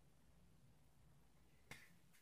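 Near silence: room tone, with one faint short click near the end.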